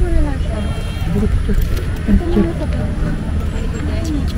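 People's voices talking, over a steady low rumble of wind on the microphone.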